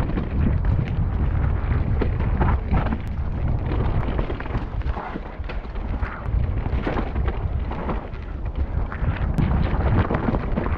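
Mountain bike descending a dirt woodland trail at speed, heard from a helmet camera: heavy wind rumble on the microphone with tyre noise on the dirt and many short clattering knocks as the bike runs over roots and stones.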